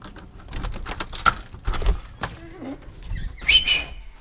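Keys rattling and clicking in a front-door deadbolt lock as it is unlocked, with a run of knocks and clicks as the door is opened. A short high squeak comes near the end.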